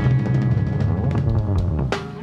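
Live band with a drum kit playing a drum roll over held bass and keyboard notes, building to a loud hit near the end: the closing of a funk song.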